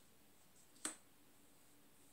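Near silence broken once, a little under a second in, by a single short, sharp click: a tarot card being set down on the table.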